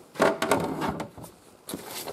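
Handling noise of plastic parts and packaging: rustling and scraping for about a second, a short lull, then more rustling near the end.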